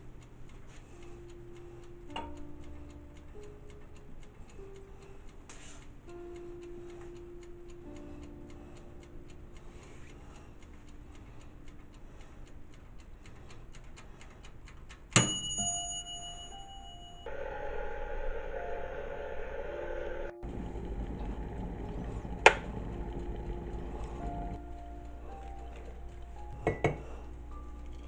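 A toaster oven's mechanical timer ticking rapidly, then its bell dinging once with a long ring about fifteen seconds in, over background music. A louder rushing noise follows for several seconds, with one sharp click near the end.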